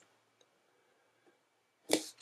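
Near silence, then a single short, sharp click near the end.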